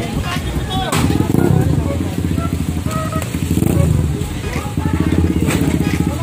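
A motorcycle engine running with a steady low pulse, amid people talking, with a couple of sharp knocks about a second in and near the end.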